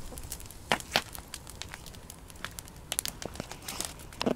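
Wood fire crackling, with sharp irregular pops: two loud ones about a second in and a quick cluster near the end.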